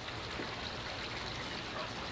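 Steady, low trickling of water.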